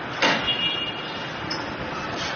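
Street traffic noise, steady throughout, with one short, sudden loud sound about a quarter second in, followed briefly by a faint high whine.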